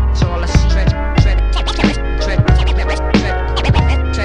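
Hip-hop beat with turntable scratching: a vinyl record scratched back and forth, cut in and out on the DJ mixer, over a steady bass line and drum beat.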